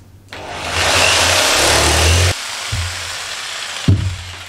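Handheld electric saw starting up and cutting along a plywood sheet, loud for about two seconds, then dropping to a quieter steady run, with a knock near the end.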